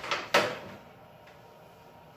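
Plastic bucket full of water being handled and lifted off a counter: a few light clatters, then one sharp knock about a third of a second in, then quiet room tone.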